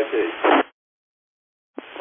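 Two-way FM radio on a ham repeater during a handover between stations. One transmission ends with a short burst of noise as it drops, then about a second of dead silence. A click near the end and faint hiss follow as the next station keys up.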